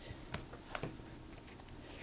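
A closed netbook being handled: a few faint clicks and light knocks in the first second as it is picked up and turned over.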